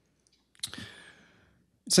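A man's mouth click about half a second in, followed by a soft intake of breath close to the microphone that fades away, before he starts speaking again near the end.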